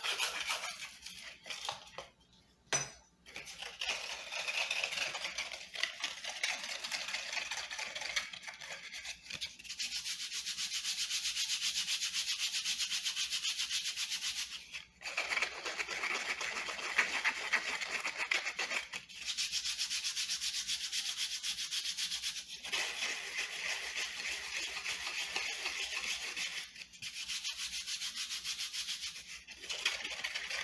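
A hand tool being rubbed or scraped in a steady, fine rasping, in stretches of several seconds broken by brief pauses.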